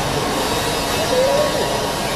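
Steady rushing noise of a large sports hall's ventilation fans, with a faint voice briefly in the background about a second in.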